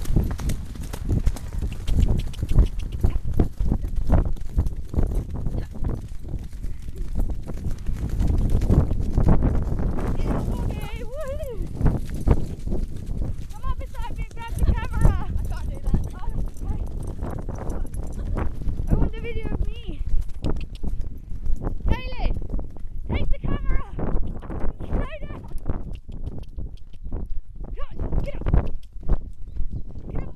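Horse hooves striking a dirt and grass trail in a fast, continuous run of thuds, mixed with the knocking and rubbing of a camera jolted by the moving horse. Several short, wavering, pitched calls or voices come between about a third and most of the way through.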